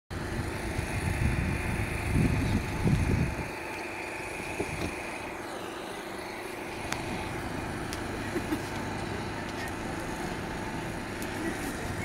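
Vauxhall learner hatchbacks' small petrol engines running at low speed, a steady hum. Low rumbling buffets on the microphone over the first three seconds or so, then the hum goes on more evenly, with a few faint clicks.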